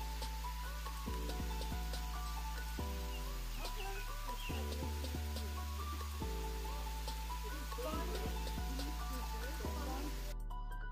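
Slow background music of sustained chords and deep bass notes that change every second or two, laid over a steady, even hiss of outdoor ambience.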